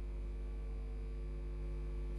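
A steady low electrical hum with a stack of even overtones. It holds one unchanging pitch throughout and sits under the audio feed with no other sound.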